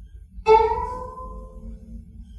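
Guqin, the seven-string Chinese zither, sounding one plucked note about half a second in. The note is left to ring and slowly fade as the piece goes on.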